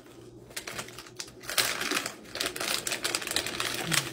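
Snack-chip bag crinkling and crackling as a hand works in it, with many irregular sharp crackles that come thickest about one and a half seconds in.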